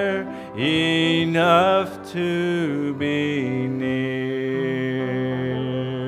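Slow hymn sung by a man's voice over acoustic guitar, in drawn-out phrases, with one long held note through the second half.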